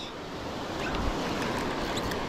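Surf breaking and washing up the beach, a steady noise that slowly swells, with wind rumbling on the microphone.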